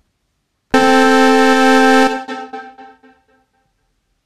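A single middle-C note played on the AudioKit Synth One software synthesizer with its sawtooth oscillators. It starts about three-quarters of a second in, is held steady for just over a second, then fades out over about a second after release.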